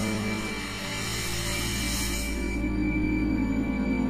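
Background film-score music: sustained low chords under a high hiss that fades out about two and a half seconds in.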